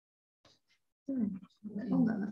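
Near silence with a couple of faint clicks for about a second, then a person's short wordless vocal sound, a hesitant 'eh' or hum, running into the start of speech near the end.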